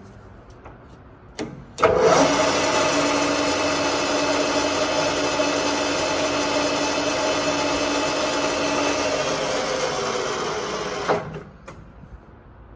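Webb engine lathe with a geared headstock starting up with a click about two seconds in, its spindle and three-jaw chuck running steadily with a hum and a couple of held tones from the drive. Near the end it is switched off with another click and quickly winds down.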